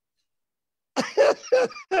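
Dead silence for about the first second, then a man laughing over a video call in four or five short, separate bursts.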